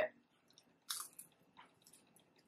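Faint mouth sounds of chewing pizza: a short soft crunch about a second in and a fainter one shortly after, otherwise quiet.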